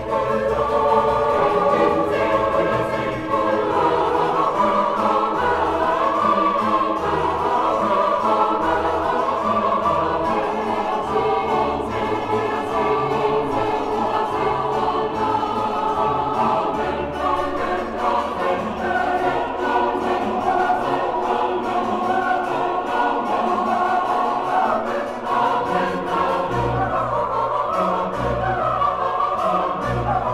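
Eight-part choir singing with chamber orchestra in a late-18th-century sacred concertato psalm setting, full and sustained, over a bass line that moves from note to note.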